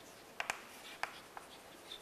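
Chalk writing on a chalkboard: a few short, faint taps and scratches as a word is written.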